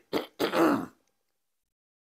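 A man clearing his throat close to a microphone: a short rasp just after the start, then a longer, louder one that stops before the first second is out.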